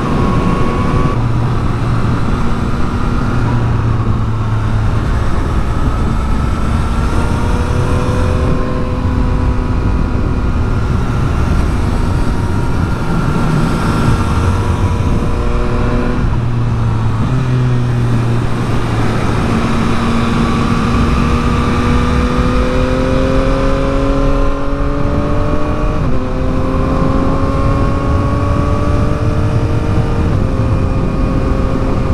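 Yamaha MT-09 SP inline three-cylinder engine running under way, heard with the rider. Its pitch climbs slowly and drops in steps several times as the throttle and gears change, over a steady rush of wind and road noise.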